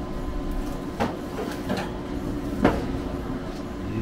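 Metal baking tray being slid off a pellet grill's grate, knocking against the metal a few times, once about a second in and loudest a little past halfway, over a steady hum.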